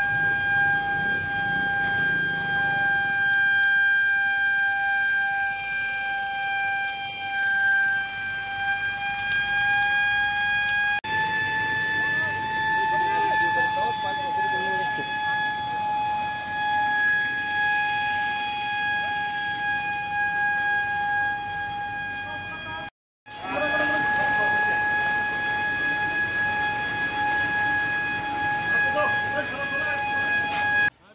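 A steady, high-pitched electronic tone, like a continuous horn or siren held on one note, sounds throughout with faint voices beneath. It cuts out briefly at about 23 seconds and comes back at the same pitch.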